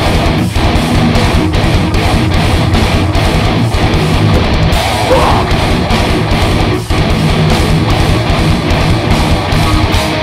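Heavy band playing live: distorted electric guitars, bass and drums in a steady, driving pattern, with two brief stops, one about half a second in and one near seven seconds.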